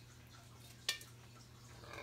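A single sharp light clink of cookware a little under a second in, as the last of the rice pudding is scraped out of a pot into a casserole dish; otherwise only a faint steady low hum.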